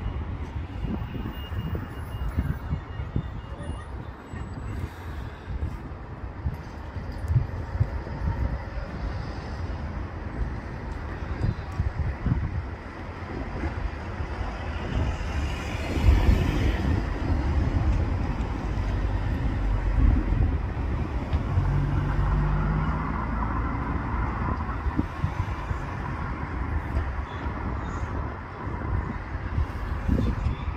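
Gusty wind buffeting the microphone over outdoor road-traffic noise, a low uneven rumble that grows louder about halfway through.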